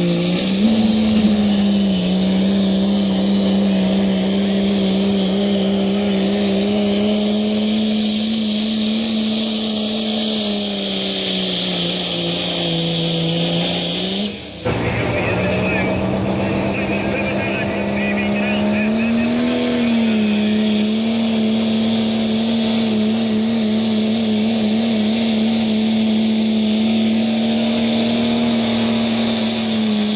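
Dodge Ram diesel pickup engines held at high, nearly steady revs under full load while pulling a weight sled, the pitch wavering slightly. About halfway through the sound breaks off abruptly and a second truck's engine takes over, again held steady at high revs.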